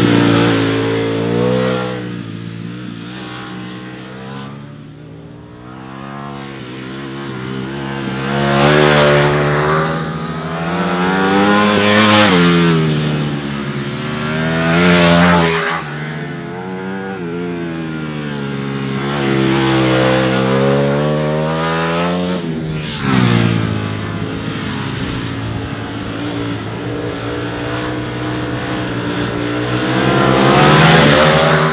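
Ducati Panigale V4 sport bike's V4 engine revving hard through a series of corners. The pitch climbs on each burst of acceleration and drops away on the shifts and roll-offs, with a loud peak every few seconds.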